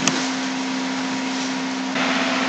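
Steady hiss with a faint steady hum under it: the background noise of the voice recording between words.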